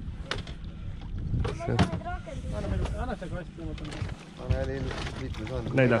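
Steady low rumble of a small boat underway at trolling speed on open water, with men's voices talking over it in short stretches.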